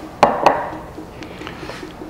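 Two sharp knocks a quarter second apart, each with a brief ring, as a glass mixing bowl is set down on a cutting board. A few faint ticks follow.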